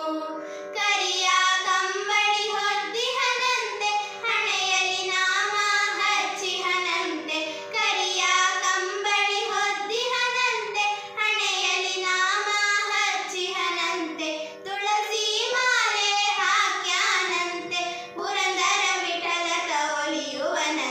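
Two girls singing a Carnatic devotional song together, the melody ornamented with gliding, wavering notes.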